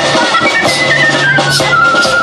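Live band playing an instrumental passage: a high wind-instrument melody stepping downward over drums and bass.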